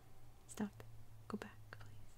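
A few soft fingertip taps on a tablet's glass screen, short separate clicks spread over two seconds.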